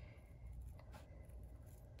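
Faint snips and scraping of sharp scissors trimming around the stitched edge of an embroidered glitter-vinyl piece, with the material rustling as it is turned in the hand.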